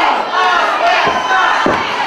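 Small live wrestling crowd shouting and cheering, many voices yelling over one another.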